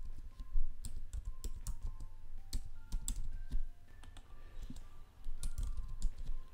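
Typing on a computer keyboard: an irregular run of quick key clicks, over a steady low hum.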